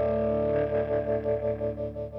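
Electric guitar chord ringing out through an Origin Effects RevivalTREM bias tremolo pedal. About half a second in, the held chord starts pulsing in volume, about four to five swells a second, as it slowly fades.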